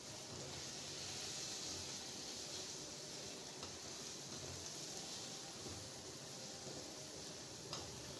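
Onions, capsicum, carrot and cabbage in oil, soy sauce and vinegar sizzling steadily in a metal karahi over a medium flame as they are stirred with a spatula, with two faint taps of the spatula on the pan.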